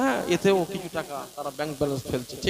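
A man's voice chanting melodically into a microphone, the pitch arching up and down from note to note.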